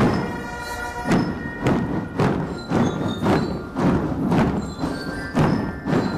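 Marching drum band playing: drums strike about twice a second, after a short gap of about a second, with ringing melodic notes sounding over them.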